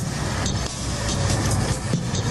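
A car driving along a road, with steady engine and road noise.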